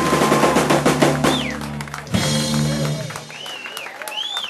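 Live band of drum kit, electric bass and electric guitar playing a song's closing flourish: a rapid drum fill with cymbals, a final hit about two seconds in, the last chord ringing out and fading, then whoops from the crowd.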